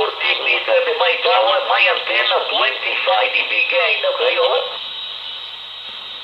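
Amateur-radio voice on the 20-metre band received in single-sideband through a Quansheng handheld's small speaker, thin and cut off above the mid treble. The voice stops just before five seconds in, leaving steady receiver hiss.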